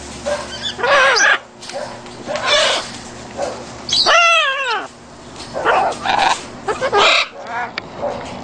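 Young macaws calling: a run of short squawks, with a longer, louder call about four seconds in.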